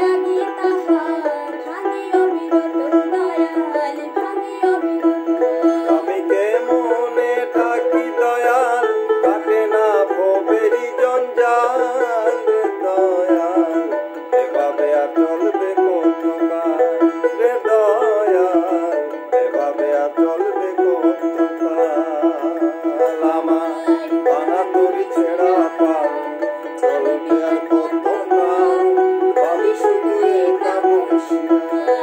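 Dotara, a plucked fretless Bengali folk lute, played continuously, with a man and a woman singing a Bengali folk song over it.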